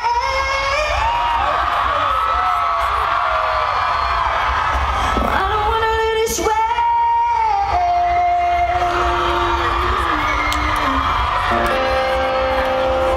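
Live post-hardcore band playing loudly with a singer, heard from within the crowd. Sung lines early on give way to long held notes in the second half.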